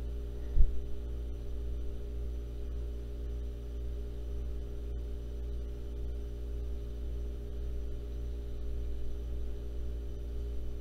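Steady electrical hum with a stack of overtones, with one short low thump about half a second in.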